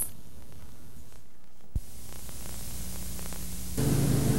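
Steady hiss and electrical hum from the videotape's audio at an edit, with a single click a little before the middle. The hum gets louder near the end.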